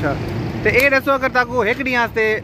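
A man talking close to a handheld microphone, starting about half a second in, over steady road traffic noise.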